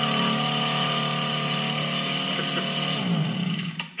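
Electric air compressor running with a steady hum. About three seconds in its pitch falls as it winds down, and it stops just before the end.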